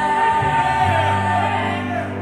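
Female voices singing a southern gospel song in harmony, amplified through microphones, with piano and acoustic guitar accompaniment. One long note is held and gives way to moving lines near the end.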